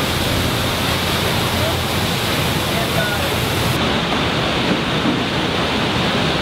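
Steady, loud din of a car assembly plant floor: machinery and ventilation making a constant rushing noise, with a few faint squeaks in it.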